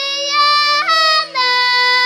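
A young girl singing solo in Bulgarian folk style, holding long, steady notes in a strong open voice, with a short break for breath and a drop to a lower held note partway through. A steady low drone sounds underneath.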